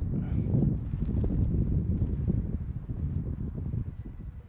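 Wind buffeting the microphone: a low, uneven rumble that eases off slightly near the end.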